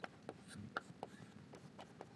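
Chalk writing on a blackboard: faint, irregular taps and short scratches as the chalk strikes and drags across the slate.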